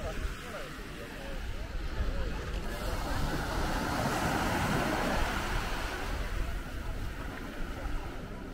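Small waves breaking and washing up a sandy beach, the wash swelling about three seconds in and easing off near the end, with faint voices of people on the beach behind it.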